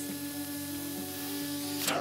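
Vacuum cleaner drawing air out of a plastic vacuum storage bag through its valve: a steady hiss of suction with a steady motor tone, under background music, breaking off just before the end.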